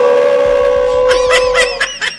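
Male voices chanting one long held note at a steady pitch, which breaks off near the end, with a few short sharp sounds over its last part.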